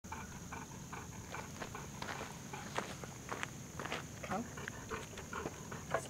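Footsteps crunching on gravelly dirt, in a run of irregular steps.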